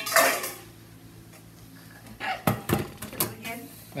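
Wordless voice sounds at the start, then from about halfway a run of sharp clinks and knocks from a room-service dish cover being handled.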